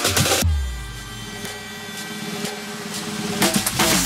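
Background electronic dance music: the drum beat stops about half a second in on a deep boom, leaving a quieter sparse passage, and comes back near the end.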